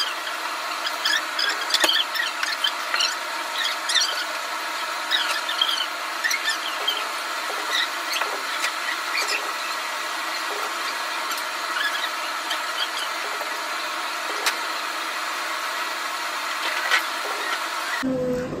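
Kitchen sound sped up: voices and kitchen clatter turned into rapid, high squeaky chirps over a steady hum.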